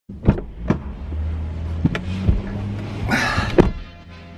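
A person climbing into a car's driver's seat: several knocks and thumps, a rustle about three seconds in, and the car door shutting with a thunk near the end, over a low steady hum.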